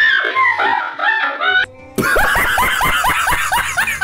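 A high, wavering voice for the first second and a half. After a brief pause comes a loud burst of rapid, shrieking laughter from a man, cackling several times a second.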